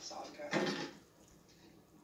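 Faint television audio from a kitchen scene: one short sound about half a second in, then a low hush for the last second.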